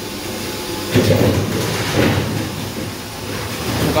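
An automatic 20-litre water-bottle filling and capping machine running with a mechanical rumble and hiss. The noise swells suddenly about a second in and again about two seconds in, as the air-driven machinery works.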